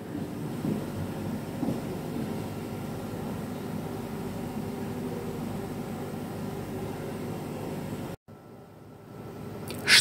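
Steady low mechanical hum, which cuts off about eight seconds in.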